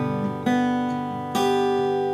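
Acoustic guitar strummed between sung lines: two chords struck about a second apart, each left to ring and fade.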